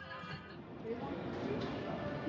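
Indistinct chatter of a crowd in a busy casino hall, with a brief knock about one and a half seconds in.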